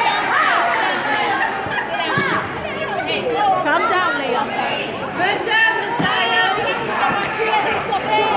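Many overlapping voices of spectators and players chattering and calling out across a school gymnasium, with a few short thuds mixed in.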